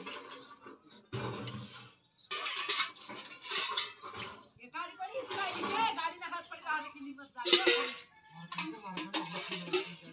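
A woman talking, which the recogniser mostly missed, over the clinks of steel pots and utensils. A sharp clink about seven and a half seconds in is the loudest sound.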